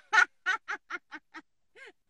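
A woman laughing: a run of about six short bursts, about four a second, that fade away.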